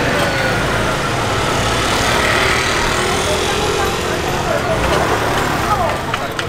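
Street traffic with a motor scooter's engine running as it passes, and people's voices in the background.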